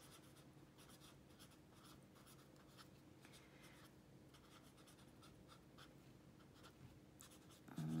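Pen writing on lined notebook paper: faint, quick scratching strokes as a short handwritten note is written out.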